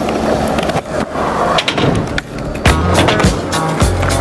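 Skateboard wheels rolling on concrete, with a few sharp clicks and knocks of the board. Music with a steady beat comes in a little under three seconds in.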